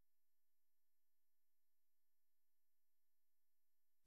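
Near silence: the audio track is gated to almost nothing.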